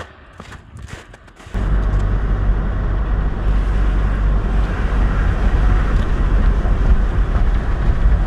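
Inside a moving car's cabin: steady low engine and road rumble while driving, starting suddenly about a second and a half in.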